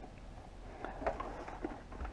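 Faint handling noise: a few light taps and rustles as a motorcycle helmet is picked up off a wooden workbench.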